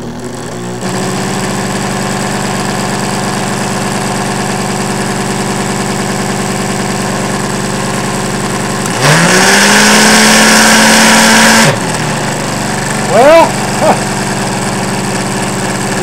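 Small electric motors running: a 14-volt cordless drill motor spinning a Buhler printer motor as a generator, with a steady hum that starts about a second in. About nine seconds in it speeds up with a quick rise in pitch and runs louder for about three seconds, then drops back to the earlier hum.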